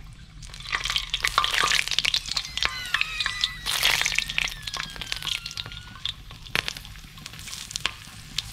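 A black scorpion sizzling in hot oil in a wok, with sharp crackles and pops, starting about a second in as it goes into the oil.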